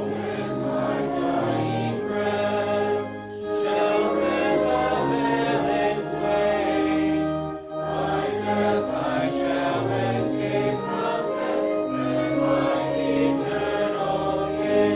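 Congregation singing a hymn in unison with organ accompaniment, breaking briefly between lines about three and a half and seven and a half seconds in.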